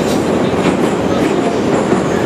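Loud, steady running noise of a St Petersburg metro train in motion, heard from inside the carriage.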